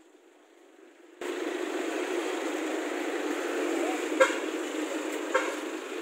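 Steady roadside street noise with passing traffic, cutting in abruptly after a second of near quiet, with two short sharp sounds partway through.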